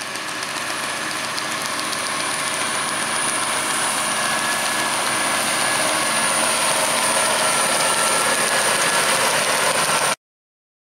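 John Deere 6930 tractor's six-cylinder diesel working under load, pulling a Richard Western muck spreader whose rear beaters are throwing muck. The sound grows steadily louder as the outfit approaches, with a thin high whine over the engine, and cuts off suddenly at the end.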